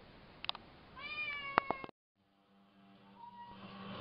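House cat giving one long meow about a second in, pitched and falling slightly, with a couple of sharp clicks around it: a cat asking to be let outside. About halfway through the sound cuts out, and faint television music follows.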